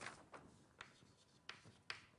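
Faint writing on a board: a handful of short, scattered taps and strokes.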